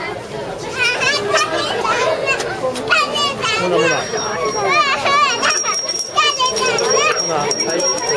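Young children chattering and squealing excitedly over one another, with adults laughing. A steady high-pitched tone comes in about halfway through and runs on under the voices.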